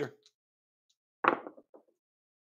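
A pair of dice thrown onto a craps table: a sharp knock about a second in as they land, then two or three smaller knocks as they tumble to rest.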